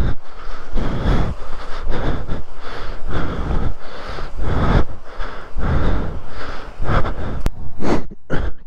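Heavy, quick breathing close to the microphone, coming in repeated bursts about twice a second, with footsteps and scrambling on a dry dirt and rock slope.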